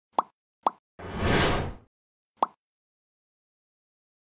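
Logo-intro sound effects: two quick pops, then a whoosh of just under a second, then a third pop.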